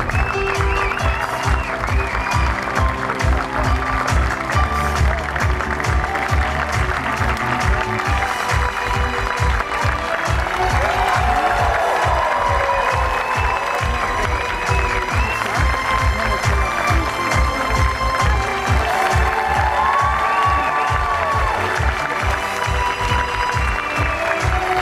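Audience applauding steadily over music, with a few pitched sounds gliding up and down above the clapping in the middle and near the end.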